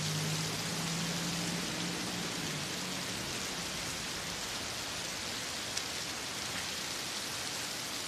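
Steady heavy rain falling, an even hiss of drops on hard surfaces.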